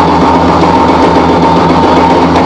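Live rock band holding a loud sustained chord: guitars and bass ringing steadily on held notes, with no clear beat.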